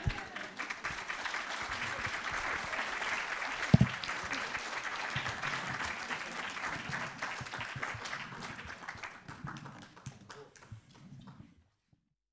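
Audience applauding, a dense patter of many hands clapping that thins out over the last few seconds and stops just before the end. A single thump sounds about four seconds in.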